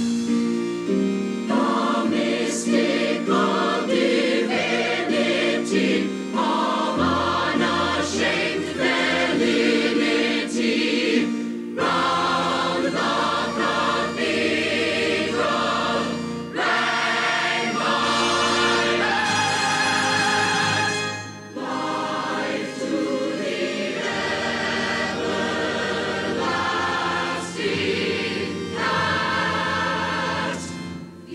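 Musical-theatre ensemble singing in full chorus over instrumental backing, with the chords and bass line changing every couple of seconds.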